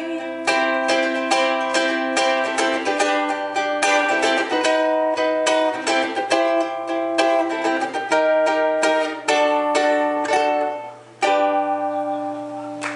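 Ukulele strummed alone in a live instrumental passage of steady chords. Near the end it drops away briefly, then one last chord is struck and rings on.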